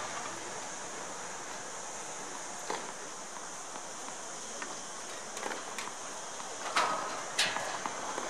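Steady outdoor hiss with a few sharp, distant knocks of a tennis ball being struck and bouncing, the loudest two near the end.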